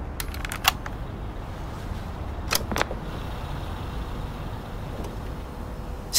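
A steady low city-traffic rumble, with sharp plastic clicks from the buttons of a small handheld device: a quick cluster of about four in the first second, then two more about two and a half seconds in.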